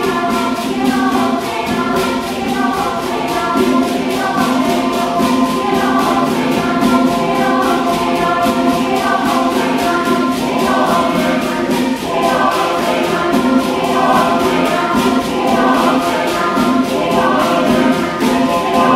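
Mixed choir of men's and women's voices singing in harmony, with a hand drum keeping a steady, quick beat underneath.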